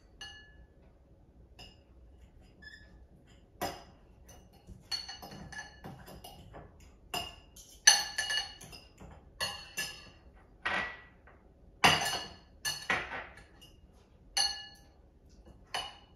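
Two metal forks mashing hard-boiled eggs in a glass bowl: irregular clinks of metal on glass, each ringing briefly, coming more often from about four seconds in, the loudest about eight and twelve seconds in.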